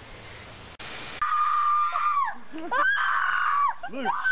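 A short burst of hiss, then a child wailing: two long, high cries, each held and then falling away in pitch.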